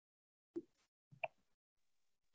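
Near silence, broken only by two faint, very short sounds, about half a second in and again a little past one second in.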